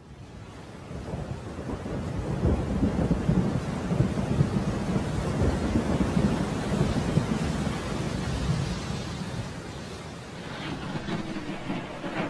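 Thunderstorm: steady rain with rolling thunder, fading in from silence at the start and easing off about ten seconds in.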